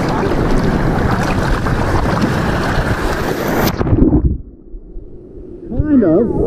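Breaking surf, a wave's whitewater rushing and churning loudly around a microphone held at water level. About four seconds in the high end cuts off abruptly and, after a short low thump, the sound turns muffled and much quieter for about a second and a half as the camera goes under the wave.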